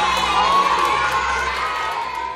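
A classroom full of schoolchildren shouting and calling out at once, many young voices overlapping in a steady din.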